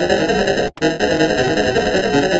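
A heavily distorted, effect-processed synthesizer jingle forming a dense, harsh clash of noise. It drops out briefly about three-quarters of a second in, then comes straight back.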